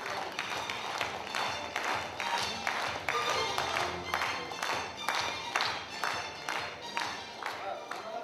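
An audience clapping in unison, a steady beat of about three claps a second, with music playing along.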